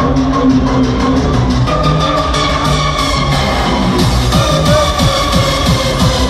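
Hardcore electronic music played loud over a festival sound system: a fast, driving kick-drum beat under sustained synth tones. The kick drum stands out more in the second half.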